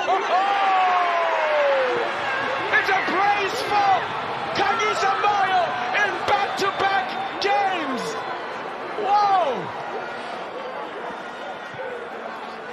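Men shouting in excitement over a goal: one long, drawn-out shout falling in pitch at the start, then many short shouts and calls. Sharp claps or slaps sound among them, and there is no crowd noise.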